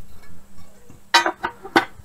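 Two sharp clicks about half a second apart as a speed square and a small tile piece are set down on the sliding table of a tile wet saw.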